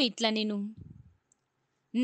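A woman's voice reading scripture aloud in Telugu. A word ends in a low creak under a second in, then there is dead silence for about a second before she speaks again near the end.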